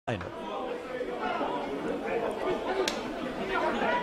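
Football crowd: many spectators' voices chattering and calling at once, a steady blend with no single speaker standing out.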